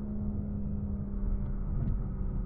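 Car driving at highway speed, heard from inside the cabin: a steady engine drone with road rumble underneath.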